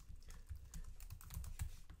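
Computer keyboard being typed on: a quick, faint run of key clicks.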